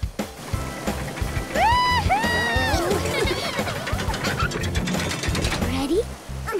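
Cartoon log-flume ride sound effect: a steady, rapid mechanical ratcheting and clicking as the log boat is hauled up the lift, under playful music with arching, sliding tones.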